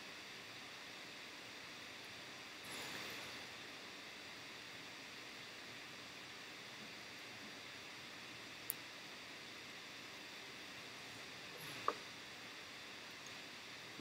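Quiet room tone: a low steady hiss, with a brief soft rustle about three seconds in and two faint clicks later on, the second near the end.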